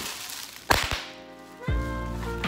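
Plastic bubble wrap being handled and pulled from a cardboard box, with one sharp snap a little under a second in. Background music comes in near the end.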